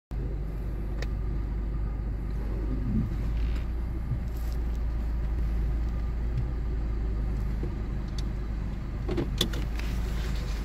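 Steady low rumble of a car's road and engine noise heard inside the cabin, with a few light clicks about a second in and again near the end.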